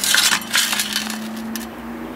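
Metal clinking and rattling as the spoked wheel and hub assembly from an exercise bike is handled and turned over. The clinks are thickest in the first half second and come as scattered lighter ticks after that, over a faint steady hum.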